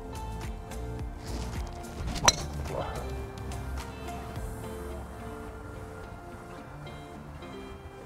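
Background music, with one sharp click about two seconds in: a driver striking a teed golf ball, the loudest sound.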